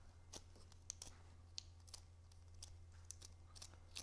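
Faint, scattered paper crackles and ticks as a pencil tip pushes and curls the fringe of a rolled cardstock flower stamen, over a low steady hum.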